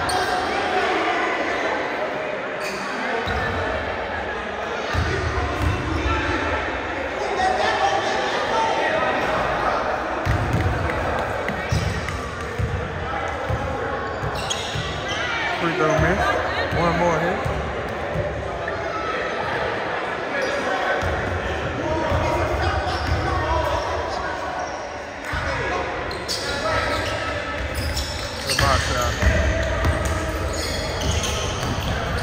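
Basketball bouncing on a hardwood gym floor, with players' and spectators' voices echoing around a large gym.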